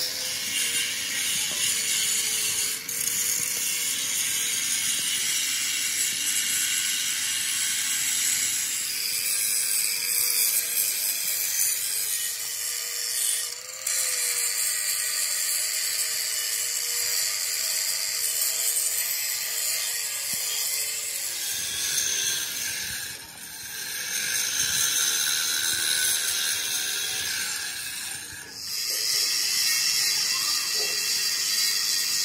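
Continuous high-pitched hissing noise of metalworking on a steel tractor trolley, broken by brief pauses a few times.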